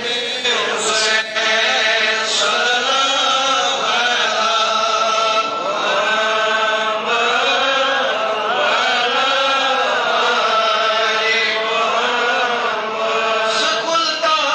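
A voice chanting an Urdu naat, a devotional poem in praise of the Prophet, sung without accompaniment in long held, wavering notes.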